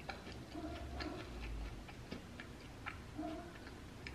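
Quiet chewing of a soft cookie: small, irregular wet mouth clicks, with a faint short closed-mouth hum about a second in and again just past three seconds.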